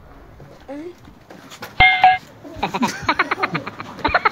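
Edited-in cartoon sound effects: a short sound with a held tone about two seconds in, then a burst of fast, high cartoon laughter like a Minion's from about two and a half seconds on.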